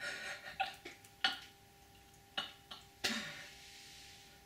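A man laughing excitedly in short breathy bursts, about six over a few seconds.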